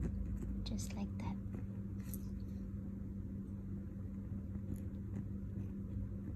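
A steady low electrical hum in the room, with faint scratches of a ballpoint pen drawing short strokes on textured paper in the first two seconds.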